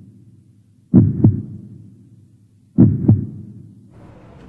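Heartbeat sound effect: a low double thump, lub-dub, heard twice, about a second in and again near three seconds, each fading out.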